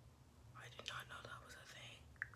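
A person whispering faintly, starting about half a second in.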